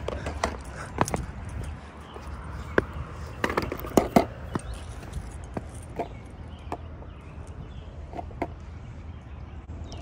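Skateboard rolling on concrete: a steady low wheel rumble with irregular sharp clacks.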